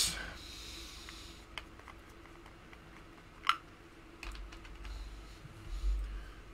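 Scattered small clicks and taps of a small glass jar of mineral spirits, its lid and a paintbrush being handled on a worktable, with one sharper click about three and a half seconds in.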